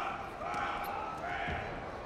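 Voices shouting in a large hall over a wrestling bout, with a dull thud of bodies on the mat about one and a half seconds in.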